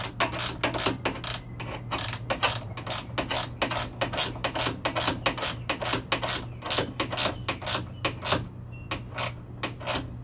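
Hand ratchet wrench clicking rapidly, about three to four clicks a second, as a bolt inside a car door is turned; the clicking thins out near the end.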